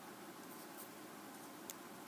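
Faint fingertip handling of small paper pieces being pressed onto a card-stock sheet, with one light click near the end, over low room hiss.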